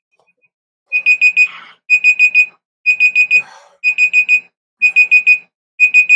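Electronic alarm beeping: high, short beeps in quick groups of four, one group about every second, starting about a second in.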